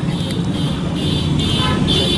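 Steady road-traffic rumble with several short, high vehicle-horn toots.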